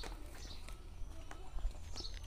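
Quiet outdoor ambience with a low steady rumble and a few faint clicks as bare wire ends are handled and twisted together.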